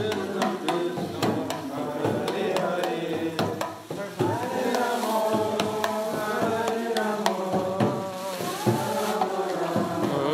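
Group devotional chanting, many voices singing together over steady drum and hand-percussion beats. About four seconds in the sound dips briefly, then the singing comes back fuller.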